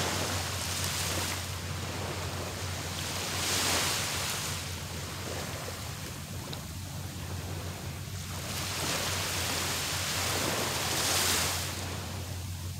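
Small waves breaking gently on a sandy beach, with a steady wash of surf that swells twice as waves come in, about three seconds in and again near the end.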